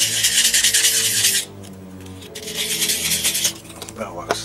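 Laser-cut plywood kit part being rubbed with a rough, rasping scrape in two spells, the first ending about a second and a half in, the second starting just after two seconds and stopping near the end.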